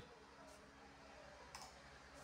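Near silence, with faint clicks about half a second and one and a half seconds in.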